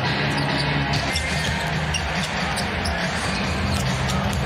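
Live basketball game sound in a large arena: the ball bouncing on the hardwood court over steady crowd noise.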